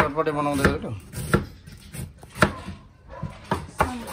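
Large kitchen knife chopping cabbage on a wooden cutting board: a few irregular, sharp knocks of the blade striking the board.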